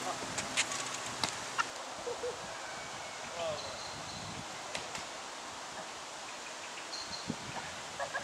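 Outdoor background noise: a steady hiss, with a few light clicks in the first two seconds and faint short high chirps later on.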